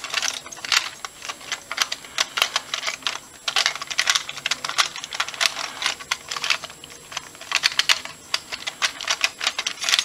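Plastic LEGO bricks of a homemade 1x2x3 Rubik's cube clicking and clattering as its layers are twisted quickly during a solve, in a fast, irregular run of clicks.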